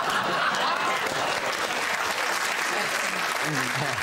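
Studio audience laughing and applauding.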